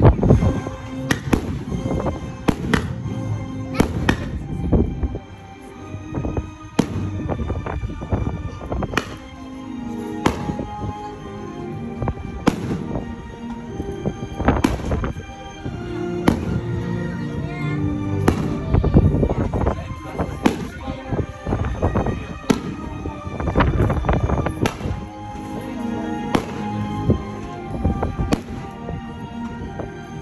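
Fireworks bursting overhead in a steady run of sharp bangs, about one every half second to a second, with a music soundtrack playing throughout.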